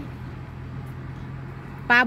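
Steady low hum of an idling engine, one unchanging tone under a light background noise.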